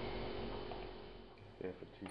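Faint room tone: a steady low hum and hiss that fades over the second half, with a few faint clicks near the end.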